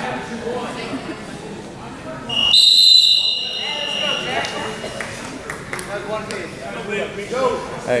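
A referee's whistle blown once, about two seconds in: a shrill blast of about a second that trails away, stopping the wrestling. Background voices of spectators run throughout.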